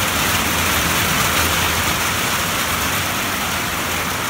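Heavy rain falling on a tin porch roof, a steady, loud hiss with no let-up.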